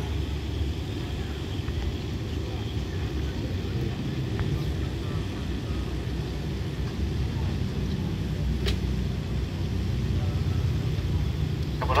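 Steady low rumble of a diesel-electric locomotive idling with its train standing at the platform, with one faint click about two-thirds of the way through.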